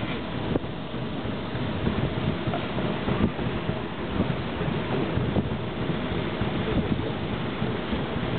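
Wind rumbling on the microphone over the steady running noise of the paddle steamer PS Waverley under way.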